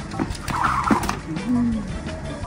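Shoes tapping and scuffing on a tiled floor in a few quick clicks as a man does a footwork trick, with a short held vocal sound near the end.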